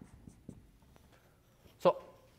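Felt-tip dry-erase marker writing on a whiteboard: a few faint short strokes and taps. A man's voice says "so" near the end.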